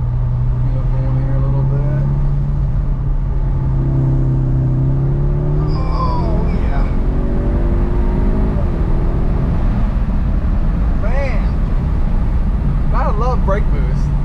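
Audi S3's turbocharged 2.0-litre four-cylinder pulling hard under acceleration, heard from inside the cabin. Its note climbs steadily, then drops at an upshift about six seconds in, after which it settles into a steady drone at cruising speed.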